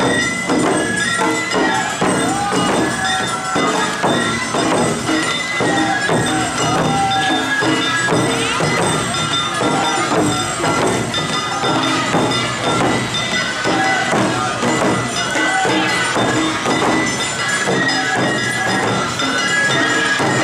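Awa Odori parade music played at close range: a large barrel drum beaten with wooden sticks in a steady, driving rhythm, with bell-like metal percussion and a sustained high flute line over it.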